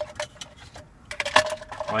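Hard plastic clicks and knocks of AeroPress coffee maker parts being handled and pushed together, in two short clusters: one at the start and one a little past the middle.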